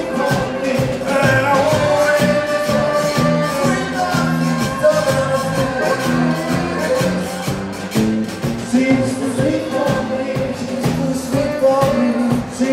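A zydeco band playing live with a steady beat: acoustic and electric guitars, electric bass, drum kit and a rubboard (frottoir) scraped in rhythm.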